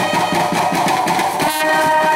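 Indian street brass band playing loudly: trumpets and horns hold a sustained chord over busy side-drum and bass-drum beats.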